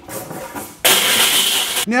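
A drink can being cracked open: a sudden loud hiss of escaping gas, starting about a second in and lasting about a second before it cuts off.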